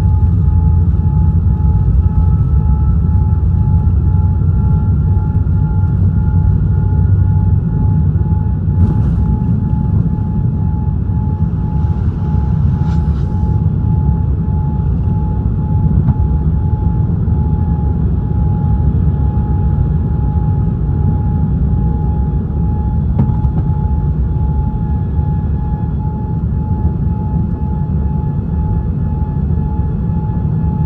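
Boeing 787-9 cabin noise through takeoff and the first climb, heard from a seat over the wing. The Rolls-Royce Trent 1000 engines at takeoff power make a loud, steady rumble with a steady whine, and a second, fainter whine rises slowly over the first eight seconds or so. A single knock comes about nine seconds in.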